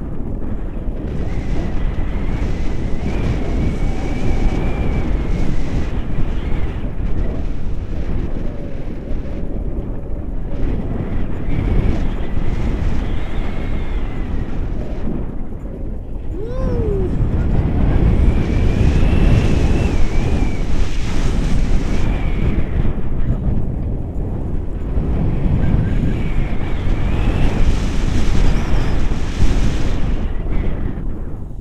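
Wind buffeting the microphone of a camera held out in the open air during a tandem paraglider flight. It is a steady, loud rush that swells and eases, with a faint high whistle coming and going.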